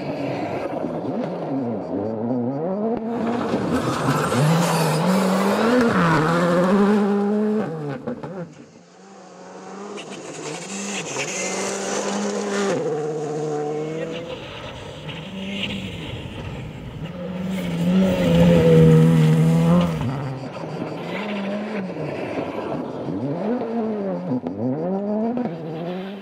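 Gravel rally cars at full stage speed, engines revving hard and dropping through quick gear changes, with gravel and dust hissing from the tyres. One car passes close and fades about eight seconds in. Another approaches, is loudest around eighteen seconds in, then goes through a run of rising and falling revs.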